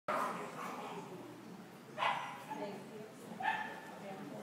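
A dog barking a few times, about a second and a half apart, over a hall murmur of voices.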